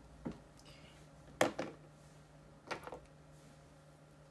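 A few sharp clicks and knocks of small objects being handled on a desk: one faint click, then the loudest knock about a second and a half in, and a double click near three seconds.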